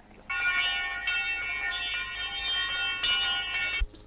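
Bells ringing on an old film soundtrack: a dense, sustained ringing that starts suddenly and is cut off abruptly near the end.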